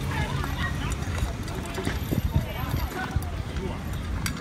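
Two dogs eating side by side from a hand-held metal bowl: quick clicks and crunches of mouths and teeth against the bowl and the food, a little denser about halfway through.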